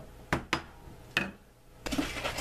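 A dead blow mallet striking a steel stitching punch, driving stitch holes through holster leather into a plastic cutting board: a few sharp, unevenly spaced knocks.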